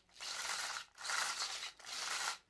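3D-printed active omni-wheel worked by hand, its side hubs twisted against each other so the angled rollers spin the ring of small wheels: a plastic rattling whirr in three short strokes. It runs okay.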